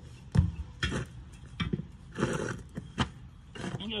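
Manual tire changer's steel bar being worked around a tire bead on a rusty wheel: a sharp knock about half a second in, then several more clanks and a rough scraping, creaking stretch about two seconds in.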